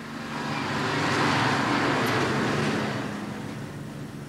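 A clay delivery truck driving past: its noise swells over the first second, peaks, then fades away toward the end.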